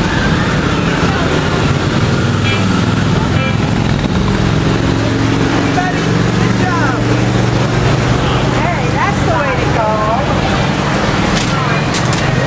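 Street traffic: a steady low engine hum of passing and idling cars, with scattered voices of people nearby, some in the second half.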